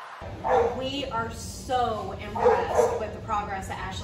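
A German Shepherd whining and yipping in greeting, the calls sliding up and down in pitch, mixed with a woman's voice.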